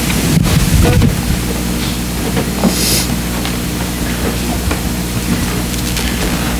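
Steady low electrical hum from a sound system with room noise. A few soft thumps and shuffles come in the first second, and there is a brief hiss about three seconds in.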